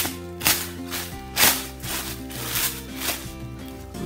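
Plastic cling wrap crinkling in several short rustles as it is handled around dye-soaked socks, the loudest about a second and a half in, over steady background music.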